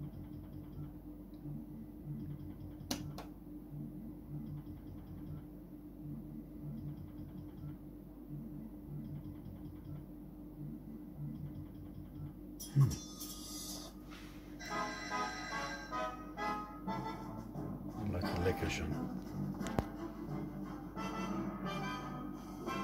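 Merkur Magie slot machine running: a low steady hum with faint, quick electronic ticking as the reels spin, then from about two-thirds of the way in the machine's electronic melody and jingles. A single thump comes just before the music starts.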